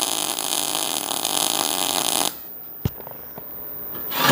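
MIG welding arc on steel square tubing under CO2 shielding gas, with the amperage turned up for CO2: a steady hissing noise that cuts off suddenly a little over two seconds in. A single sharp click follows.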